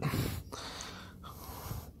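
A person breathing close to the microphone: a short, sharp breath, then a longer one.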